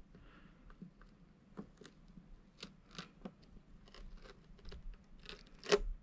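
Faint crackles and ticks of a bow tie emblem being peeled off a car's painted decklid, its foam adhesive tearing loose, with one louder snap near the end.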